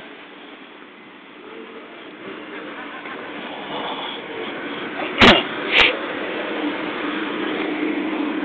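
Street traffic noise growing steadily louder as a car approaches, with an engine hum coming up near the end. Two sharp knocks about half a second apart a little past the middle.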